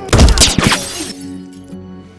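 A loud shattering crash, something breaking as the fighting men slam into it, lasting about a second after a brief lead-in, over a low sustained music score.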